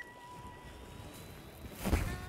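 Quiet outdoor background with faint wind, and a short whoosh of air on the microphone near the end.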